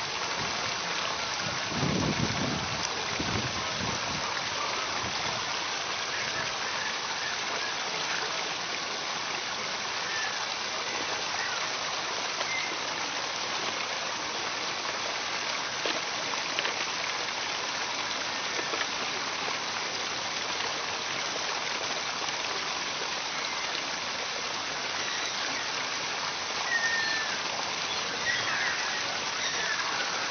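Small waterfall splashing into a rock pool: a steady rushing and hissing of falling water, with a few low bumps about two to four seconds in.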